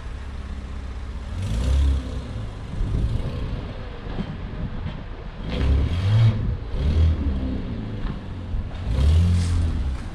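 Yellow Porsche 911 GT3 RS replica sports car's engine rumbling at low speed as it is manoeuvred, with about five short throttle blips that swell and fall back.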